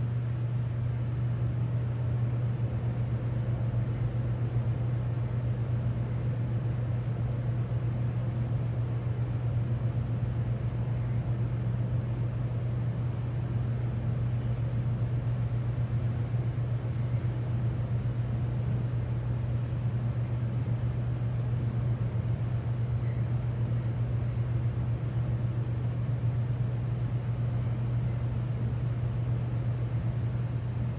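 Loud, steady hum of a Northern traction elevator's cab ventilation fan, over the low rumble of the car travelling up the shaft, heard from inside the cab.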